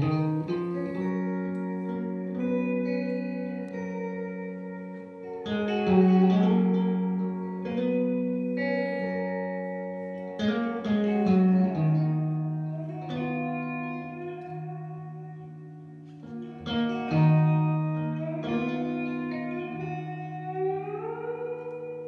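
Live amplified electric guitar playing an instrumental passage, with effects on the sound. Chords are struck about every five seconds and left to ring, while held notes move step by step above and below them.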